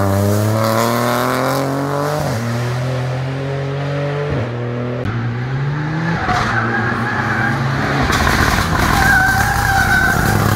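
Rally car engine revving hard as it accelerates away out of a hairpin, its pitch climbing and dropping sharply at each of about three upshifts, then fading. In the second half a Mitsubishi Lancer Evolution X rally car approaches, its engine growing louder with a wavering high squeal in the last few seconds.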